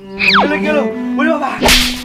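Edited comedy sound effects over background music: a quick falling whistle near the start, a run of short chirping sounds, then a sharp whip-like swish near the end.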